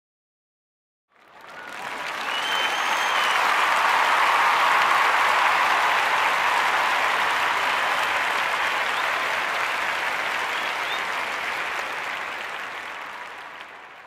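Audience applause that starts about a second in, swells to full within a couple of seconds, then slowly fades out near the end, with a short whistle or two over it.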